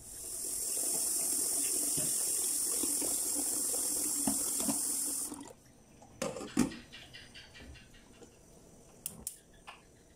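Kitchen tap running into a stainless steel sink as boiled cassia leaves are rinsed in a strainer, a steady hiss that cuts off after about five and a half seconds. A few short knocks follow as a lidded cooking pot is handled in the sink.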